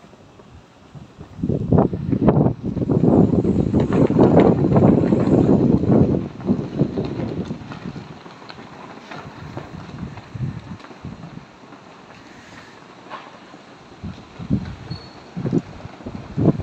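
Wind buffeting the phone's microphone, in irregular gusts that are loudest from about two to six seconds in and then ease off to a low rumble.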